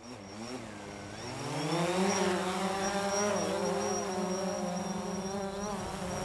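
Quadcopter drone's propellers buzzing, rising in pitch over the first two seconds and then holding a steady, slightly wavering hum, over a bed of neighbourhood ambience with a thin high steady tone.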